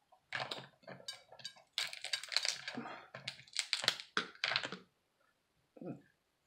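Cooked crab shell being cracked and pulled apart by hand: a quick run of sharp crackles and snaps lasting about four and a half seconds, then stopping. A short closed-mouth "mm" comes at the very end.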